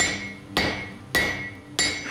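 A blacksmith's hand hammer strikes red-hot steel on an anvil: four ringing blows about 0.6 s apart.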